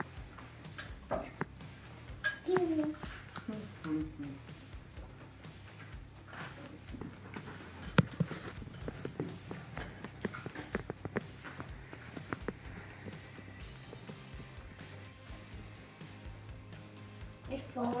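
Quiet background music under scattered clicks and clinks of tableware, with a young child's voice briefly a few seconds in; a single sharp click about eight seconds in is the loudest sound.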